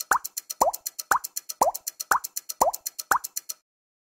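Intro sound effect of water-drop bloops, one every half second, each rising in pitch and alternating higher and lower, over a fast, high ticking like a clock. It all stops shortly before the end.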